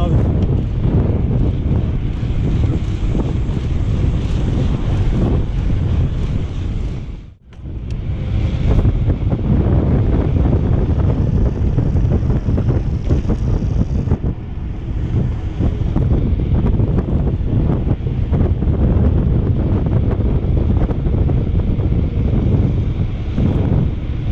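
Heavy wind buffeting on an action camera's microphone as a mountain bike descends a paved road at speed. It drops out briefly about seven seconds in.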